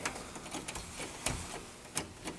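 A few faint, separate clicks and light knocks, four or so in two seconds, the one about a second and a quarter in a little duller and heavier than the rest.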